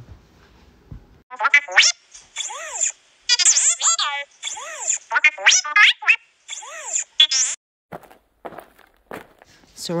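BB-8 droid sound effect: several bursts of electronic beeps and warbling chirps, with quick rising and falling whistles. A few short faint clicks follow near the end.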